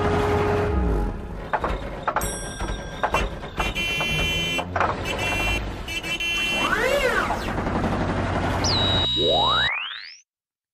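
Cartoon sound effects for a giant robot wrecking a city: crashes and rumbling debris, clusters of electronic beeping tones, and an electronic glide that rises and falls about seven seconds in. A fast rising sweep near the end cuts off suddenly.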